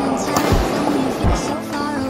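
Background music: a song with a sung melody over a thumping beat.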